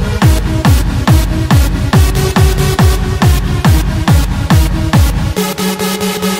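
Electronic club dance music: a steady four-on-the-floor kick drum about twice a second with hi-hats and synth notes. About five seconds in, the kick and bass drop out for a short break, leaving a held synth note.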